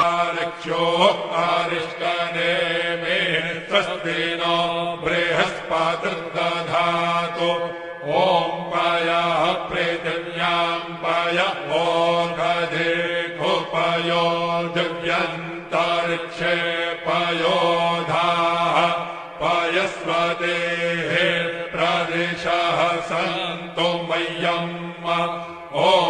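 Sanskrit Vedic mantras chanted in a steady, melodic recitation, with brief pauses between verses.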